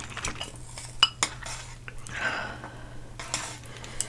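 Chopsticks clicking and scraping against ceramic bowls and a metal baking tray while saucy instant noodles are picked up, in a scatter of light clinks. A sharp, ringing clink about a second in is the loudest.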